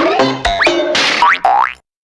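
Upbeat background music with cartoon 'boing' sound effects: several quick rising pitch glides, the whole track cutting off suddenly just before the end.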